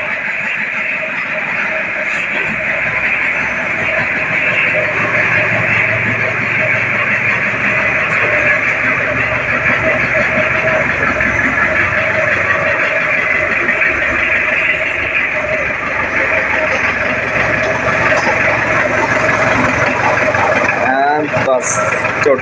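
Mahindra jeep's engine running steadily while the jeep is driven out of a garage, an even, unbroken noise with no revving.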